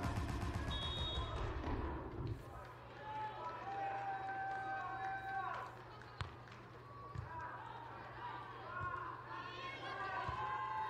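Volleyball serve: one sharp slap of the hand on the ball about six seconds in, then a softer hit on the ball about a second later. Indistinct voices and arena sound run under them.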